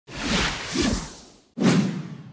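Whoosh sound effects of a logo animation: a long whoosh that swells twice and fades away, then a second, sudden whoosh about one and a half seconds in.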